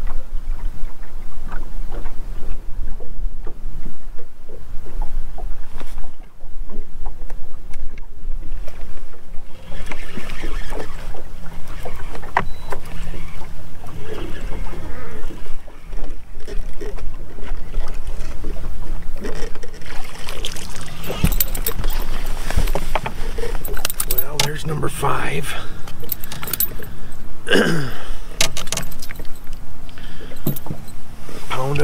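Steady wind and water noise around a bass boat while a bass is reeled in and landed. In the last ten seconds there are sharp clicks, clatter and splashing as the fish is brought aboard and handled, with a short vocal sound.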